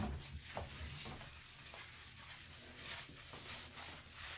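A hand scrubbing shampoo lather into a wet dog's coat: irregular rubbing and squishing strokes, with a dull bump right at the start.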